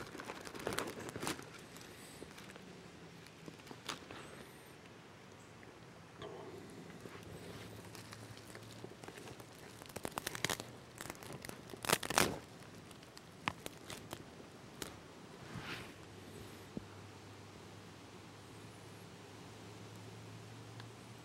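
Dry grass tinder and small sticks crunching and crinkling as they are handled and fed onto a smouldering fire of wet wood, with a few sharp cracks; the loudest crack comes about twelve seconds in.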